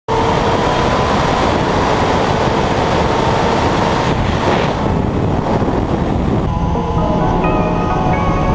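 Racing motorcycle engine held at high revs with loud rushing noise, as heard from an on-board camera; about six and a half seconds in, the sound changes and music comes in.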